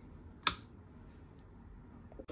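A single sharp click about half a second in: the bench power supply's front-panel toggle power switch being flipped.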